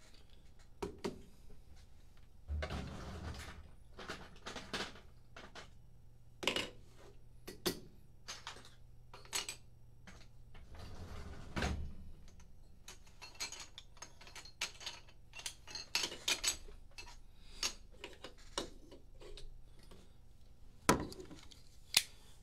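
Irregular clicks, taps and short rustles of small objects being handled on a wooden table, with a sharper click near the end.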